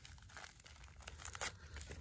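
Faint crinkling of a folded Mylar space blanket and its plastic bag as it is pulled out of the tight packet, with a couple of sharper crackles near the end.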